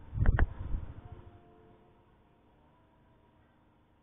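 Handling noise on the tabletop: a low thump with two quick knocks as a phone is picked up off the table, then a faint steady background.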